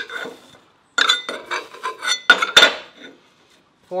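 Steel drilling chips and the drilled plate clinking and scraping on a steel table as a cloth rag wipes them away: a run of small clinks and rubs with a few sharper clinks in the middle.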